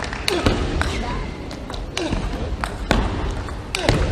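Table tennis rally: the ball clicks sharply off the rackets and the table in quick, irregular succession.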